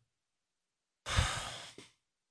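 A man's breathy sigh, one short exhale about a second in that fades away within under a second.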